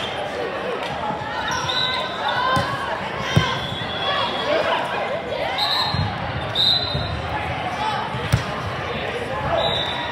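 Indoor volleyball play in a large, echoing hall: a steady babble of players' and spectators' voices, short high sneaker squeaks on the court floor, and sharp smacks of the ball being hit, the loudest about three and a half seconds in and again just past eight seconds.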